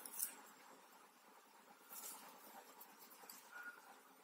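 Faint rustling and scratching of knitting needles working wool yarn, with brief stronger scratches about a quarter second in and again about two seconds in.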